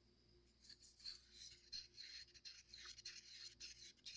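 Faint, quick, irregular scraping of a stir stick against the inside of a cup while mixed mold casting powder and water are stirred into a thin, batter-like slurry.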